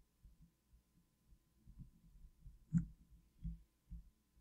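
Quiet room tone with a few faint low thumps, and one sharper soft tap about three seconds in.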